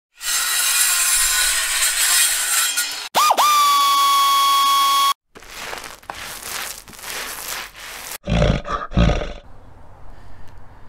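Intro sound effects: a loud animal roar for about three seconds, then a steady high electronic tone that dips and settles for two seconds. Fainter rustling noise follows, then two loud low grunts near the end.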